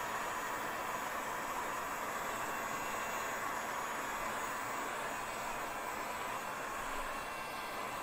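Electric heat gun running steadily, its fan blowing a constant whoosh of hot air with a faint steady whine, as it is moved over wood-burning paste on denim.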